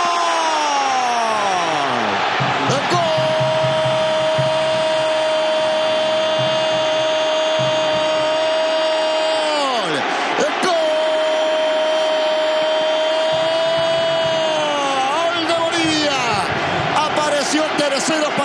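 TV football commentator's long goal cry, a 'gooool' held on one steady note for several seconds, broken once about ten seconds in, taken up again and then falling away, over stadium crowd noise.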